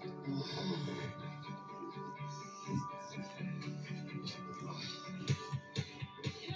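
Film soundtrack music with guitar, played from a television and heard across a room.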